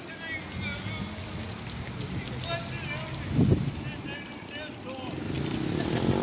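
Wind buffeting the microphone, with a low rumble throughout and a stronger gust about three and a half seconds in, over faint distant voices.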